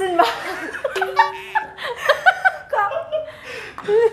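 Women laughing, with a woman's voice breaking into laughter and short exclamations.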